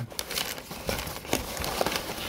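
Brown kraft packing paper crumpling and rustling as hands pull it out of a cardboard box, with irregular crackles.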